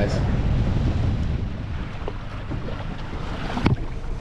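Wind rumbling on the microphone, with one sharp knock a little before the end.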